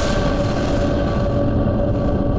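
News channel logo sting: a loud whooshing hit with a few steady tones held underneath, its hiss dimming as it goes.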